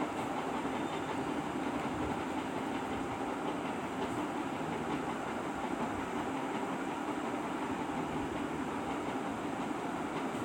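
A steady, unbroken rumbling background noise, like machinery or a passing vehicle, with no strikes or changes.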